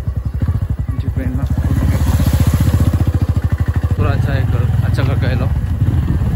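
Motorcycle engine running as the bike is ridden, a rapid, even low pulsing that grows louder around two to three seconds in and then eases, with rushing noise alongside.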